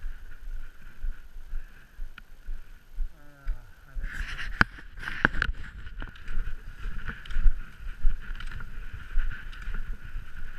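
Skate skis swishing stroke after stroke over groomed snow, with ski poles clicking as they plant and wind rumbling on the camera microphone. The skiing grows louder about four seconds in, with a few sharp pole clicks.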